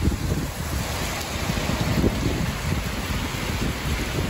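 Storm wind gusting against the microphone in uneven low rumbles, over a steady hiss of rain.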